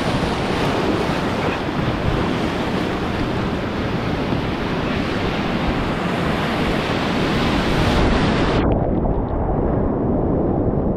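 Whitewater rapids rushing and breaking around a kayak, with wind on the microphone. About eight and a half seconds in, the high hiss cuts off suddenly and the rush turns muffled.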